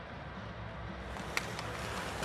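Ice hockey arena ambience during live play: a steady low murmur of crowd and rink noise, with one sharp click about one and a half seconds in.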